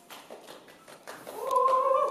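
After the music ends, a few faint clicks, then a single high held call from a person's voice, starting about one and a half seconds in and rising slightly in pitch.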